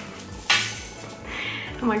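A gold bead garland clinking and rattling as it is handled, with a sharp clatter about half a second in followed by softer rustling.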